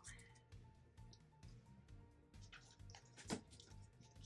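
Near silence: faint background music, with a few soft clicks and one sharper click about three seconds in as a taped cardboard box is handled.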